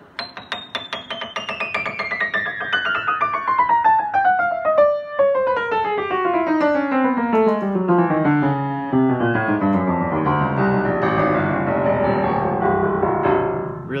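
Otto Bach upright piano played one key at a time in a quick, steady descending run from the top treble down into the bass. Every key sounds, showing that all the keys play, and the bass at the end is rich.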